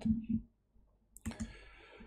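A single computer mouse click a little over a second in, advancing the presentation slide, followed by a faint hiss.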